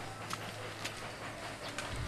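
Handling and walking noise of a handheld camcorder carried outdoors: irregular clicks and knocks, like footsteps, over a low steady hum.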